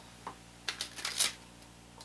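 A few short rustles of paper being handled, the loudest just past halfway, then quiet.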